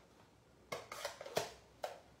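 Stamping tools being handled and set down on a tabletop: four short, light clicks and knocks, the first about two-thirds of a second in.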